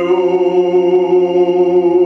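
Male voices singing a Kuban Cossack historical folk song unaccompanied, holding one long drawn-out note.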